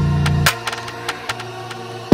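NY drill beat instrumental: a held 808 bass note cuts out about half a second in, leaving a sparse break of crisp hi-hat ticks over a faint low tone.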